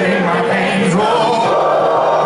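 Live rock band playing through a large festival sound system, recorded on a phone from within the crowd, with many voices singing along together.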